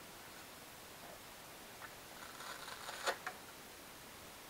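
Steady faint hiss from a small onboard camera, with rustling from about two seconds in, a sharp click a little after three seconds and a smaller click just after it: handling noise as the model airplane carrying the camera is moved.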